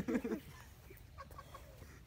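A man's voice trails off, then a quiet outdoor background with a few faint short bird calls, which sound like a chicken clucking, a little after a second in.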